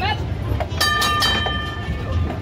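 Steel wheels of a horse-drawn streetcar rolling along street rails with a steady low rumble. About a second in, a bright metallic strike rings out with several clear tones that die away over about a second.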